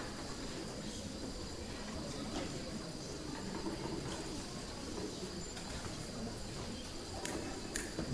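Quiet hall ambience: a low steady rumble and hiss with a faint, steady high-pitched tone and a few soft clicks and rustles.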